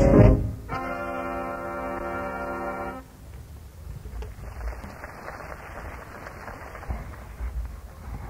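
A small jazz band's horns finish a swing tune and hold a final chord, which cuts off about three seconds in. A quieter, scattered audience applause follows, heard through the hiss of an old live reel-to-reel tape.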